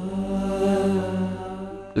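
Background score: a held, chant-like vocal tone over a steady drone.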